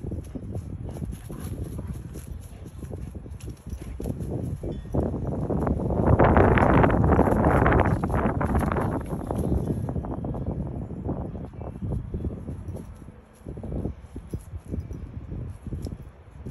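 Dog rustling through grass as it paws and noses at a garter snake, with wind noise on the microphone. A louder rush of noise runs through the middle.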